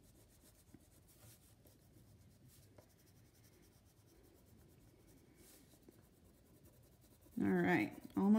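Faint scratchy strokes of a colouring tool rubbing back and forth on paper as a drawing is coloured in.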